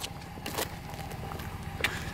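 Low, steady rumble of a pickup truck idling, with two faint clicks, one about half a second in and one near the end.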